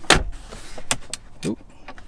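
A clunk as the Ford F-150's power-stowing gear shifter finishes folding flat into the center console, followed by a few light clicks.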